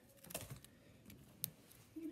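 Faint handling noise from hands working close to the microphone: a few soft ticks about a third of a second in, then one sharper click at about a second and a half.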